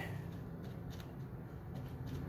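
Faint, irregular scraping of a tool stirring J-B Weld two-part epoxy paste on a scrap of wood, over a low steady hum.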